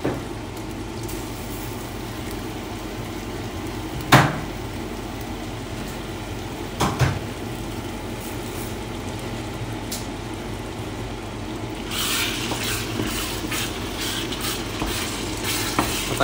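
Sliced tomatoes sizzling as they fry in hot oil in a steel pot. There are two sharp knocks, about four and seven seconds in, the first the loudest sound. From about twelve seconds a spoon stirs and scrapes through them and the sizzle grows louder.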